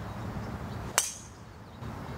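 A golf club striking a ball off the tee once, about a second in: a single sharp crack with a brief high ring after it.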